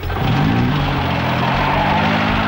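SUV engine revving up as the vehicle pulls away, its pitch rising about a quarter second in and then holding steady.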